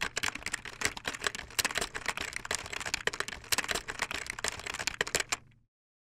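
Keyboard typing sound effect: a quick, uneven run of key clicks that stops abruptly near the end.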